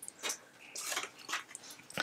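Faint rustles and light clicks of fingers handling a glued cardstock box. About two-thirds of a second in there is a brief, faint high tone.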